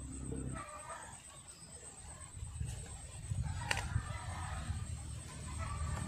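A chicken clucking in short calls in the background, with one sharp tap a little past halfway through.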